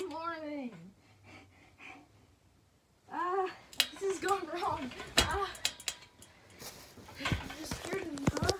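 A child's wordless voice sounds during rough-housing on a bed: one drawn-out cry in the first second, then after a short quiet a run of short cries and grunts from about three seconds in, with bumps and rustling of bedding among them.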